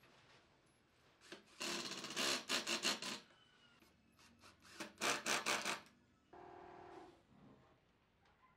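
Cordless impact driver running screws into wooden slats, in two bursts of about a second and a half and a second, each a rapid hammering rattle. Near the end a shorter, quieter steady whir.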